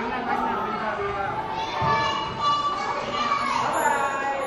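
Indistinct talk and chatter from adults and a young child, with one low thump about two seconds in.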